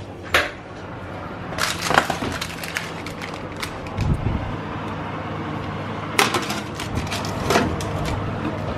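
Metal baking tray clattering against the oven rack as it is handled and slid into the oven: a scattered series of sharp clanks and clicks, with a low thump about four seconds in and a cluster of clicks near the end.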